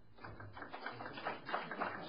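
Audience applauding in a lecture hall: scattered claps that begin just after the start and build into fuller applause.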